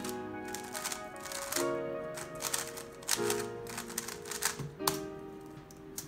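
Quick, irregular plastic clacking of a DaYan TengYun V2 M magnetic 3x3 speedcube being turned fast in a solve, set at its lowest tension (1) and elasticity (0). Background music with held chords plays under it.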